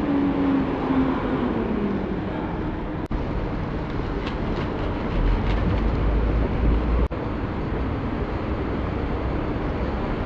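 Steady city street traffic noise, with a passing vehicle's engine note falling in pitch over the first couple of seconds and a deeper rumble about halfway through. The sound drops out briefly twice.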